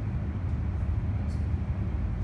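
Steady low rumble of room background noise, with a brief faint hiss about a second and a half in.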